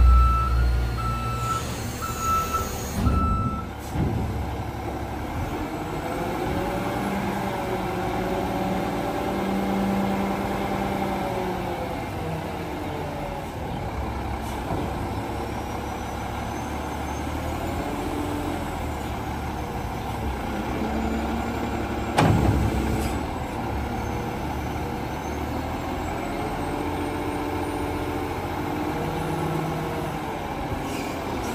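Garbage truck's Cummins ISL9 diesel engine running and revving up and down in slow swells as the hydraulic front lift arms are worked, with a warning beeper sounding for the first few seconds. A single sharp clunk about 22 seconds in.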